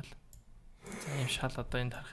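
A few faint computer mouse clicks in the first second, then a man's voice speaking through the second half.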